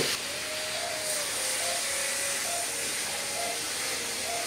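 Dental suction running: a steady hiss, with faint short tones underneath.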